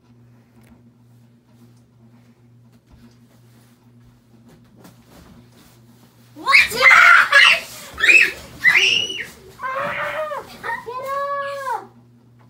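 A low, steady hum of a quiet room for about the first six seconds. Then a child's loud screams and yells burst out in several outbursts, ending in long, wavering cries near the end, as a boy pounces on his sleeping brother to scare him.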